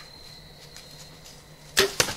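A bow being shot: a sudden sharp snap of the string and limbs at release, near the end, after quiet woods.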